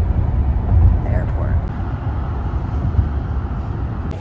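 Steady low rumble of a car driving at highway speed, heard from inside the cabin: tyre and engine noise.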